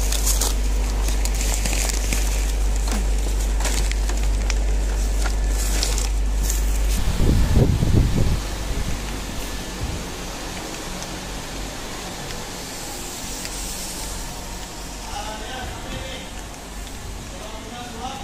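Rustling and scattered knocks of a rice bag being handled into a plastic shopping basket, over a steady low rumble from the handheld phone. About seven seconds in comes a loud low rumbling burst lasting a second or so, and after it quieter shop ambience with faint voices.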